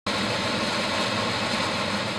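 Steady mechanical noise, an even rush with a low hum under it. It cuts in suddenly and begins to fade at the very end.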